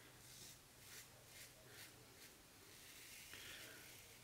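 Faint scratching strokes of a 3D-printed Falcon single-edge razor cutting stubble through shaving lather, a few short strokes about every half second, then a slightly longer stroke near the end.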